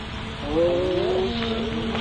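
A male singer's voice in a sung Yazidi story: after a short breath, it slides up and down in pitch and then settles on a steady low held note as the next chanted phrase begins.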